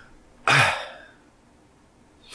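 A man clears his throat once, a short burst about half a second in that fades quickly.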